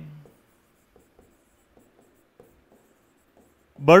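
Marker pen writing on a whiteboard: a series of faint, short, irregular strokes.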